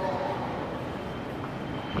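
Steady low rumble in a covered car park, with faint voices trailing off in the first moments.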